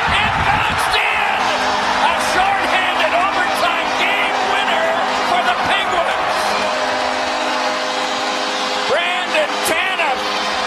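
Hockey arena crowd roaring and cheering at a home-team overtime winning goal, with the arena's goal horn holding a long steady tone over the roar from about a second and a half in until near the end.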